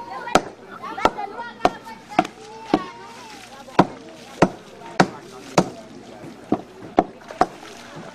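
A steady run of sharp chopping blows on wooden timbers, about a dozen, roughly one and a half a second.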